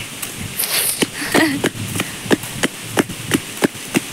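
A series of short, sharp knocks or taps, about three a second and slightly uneven.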